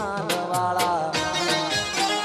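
Live Gujarati folk-style band music over a DJ sound system: a gliding, bending electronic keyboard melody over a steady percussion beat.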